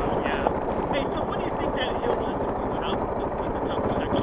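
Adventure motorcycle running at a steady cruise on a gravel road, its engine blending with wind and road noise into an even rumble.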